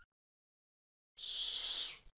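About a second of silence, then a short, sharp hiss lasting just under a second that cuts off at the end.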